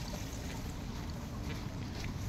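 Wind rumbling on a phone microphone over a steady hiss of rain, with faint footsteps on wet pavement.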